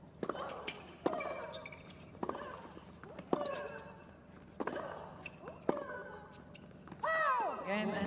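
Tennis rally: a ball struck back and forth with rackets about once a second, most hits followed by a player's grunt. Near the end a loud shout with falling pitch marks the end of the point.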